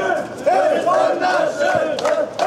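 A crowd of voices chanting loudly together in a quick, even rhythm.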